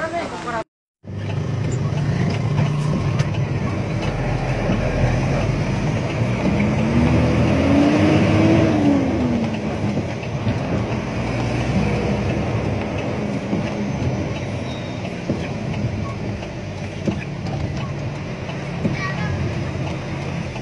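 A vehicle engine running under steady road noise, heard from the moving vehicle. Its pitch rises and then falls in the middle as it speeds up and eases off.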